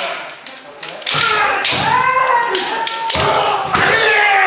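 Kendo practice: bamboo shinai striking and clacking, with drawn-out kiai shouts from several practitioners. Feet stamp on the wooden floor. The first second is quieter; from about a second in come sharp strikes and a long held shout.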